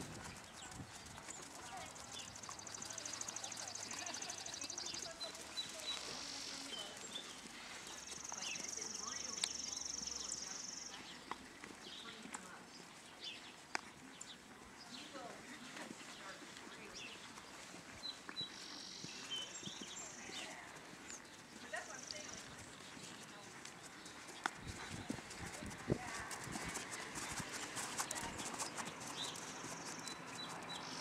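Horse's hooves falling on soft arena sand at a walk: faint, irregular ticks and thuds, with a few short high bird chirps.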